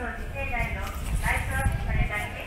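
A public-address announcement speaking over the street, with irregular footsteps underneath.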